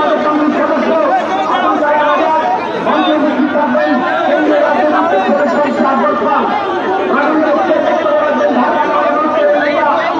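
Several people talking over one another in steady, continuous chatter.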